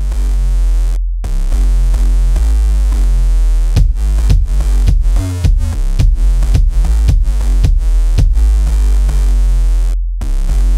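Electronic backing track with a deep bass line playing from a Roland SPD-SX PRO, and a kick drum struck about twice a second from about a second in. Each kick hit sets off the sidechain compressor, ducking the backing track so it drops back under the kick.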